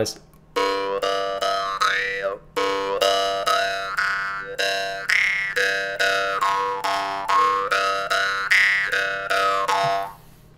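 Jaw harp tuned to G, plucked about four times a second on one unchanging drone note. The player's throat (glottis) shapes the overtones, so a bright overtone steps up and down through the instrument's strongest resonance points.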